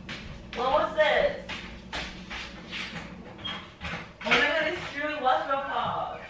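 A voice heard from another room, its words unclear, in two stretches about a second in and in the second half, with a few light knocks in between.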